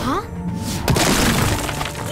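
Cartoon crash sound effect of a wall being smashed through: a sudden loud shattering crash about a second in that trails off, over background music.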